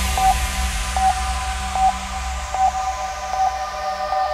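Hardstyle electronic track in a quiet breakdown with no drums: a held synth chord under a fading, falling noise sweep, with a short note repeating about every 0.8 seconds.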